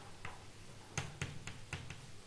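Chalk writing on a blackboard: a quick, irregular run of faint taps as the chalk strikes and lifts off the board, most of them in the second half.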